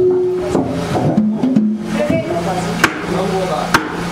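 Voices over background music with a steady low hum, and two sharp knocks a little under a second apart in the second half.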